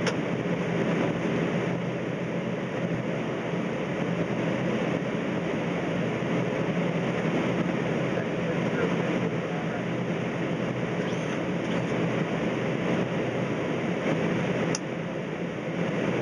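Steady flight-deck noise of a Boeing 767 on approach with the landing gear down: a constant rush of airflow over a low engine hum, easing slightly near the end.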